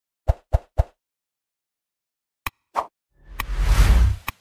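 Animated logo intro sound effects: three quick pops in the first second, a click and another pop at about two and a half seconds, then a swelling whoosh with a deep rumble near the end.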